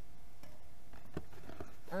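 Aluminium beer cans being handled and lifted out of their pack, giving a few faint light knocks from about a second in.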